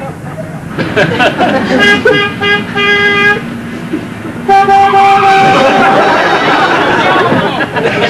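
Car horns honking in traffic: a held blast of about a second and a half, then a second, louder blast about four and a half seconds in.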